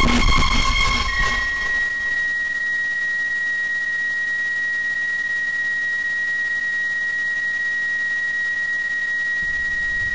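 Experimental electronic noise music: a sudden loud burst of noise at the start settles within about a second into a single steady high-pitched tone, held unchanged over a faint hiss.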